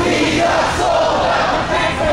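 Crowd of marching protesters chanting and shouting together, many voices at once.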